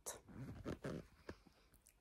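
Faint rustling and a few soft clicks of a phone being handled and turned around, with near silence in the last half second.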